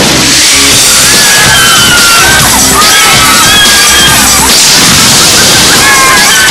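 Action-scene soundtrack: dramatic music under loud fight sound effects, with sharp cracks, whooshes and crashing impacts.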